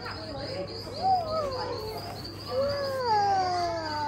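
A young child's drawn-out, wavering wail. A short rise and fall comes about a second in, then a longer cry that slides downward in pitch near the end. Underneath runs a steady, fast, high-pitched chirping like crickets.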